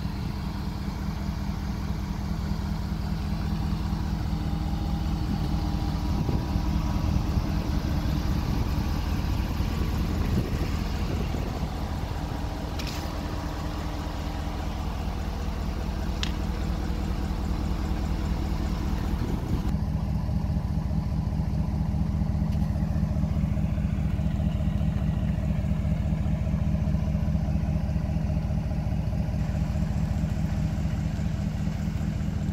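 Ram pickup truck's engine idling steadily.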